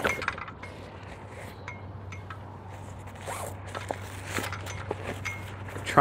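Zipper and canvas of a padded antenna bag being opened and handled, with scattered small clicks and scrapes from the metal tripod inside. A steady low hum runs underneath.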